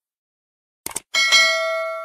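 Subscribe-animation sound effect: a short click about a second in, then a notification bell rung twice in quick succession, ringing on and slowly fading.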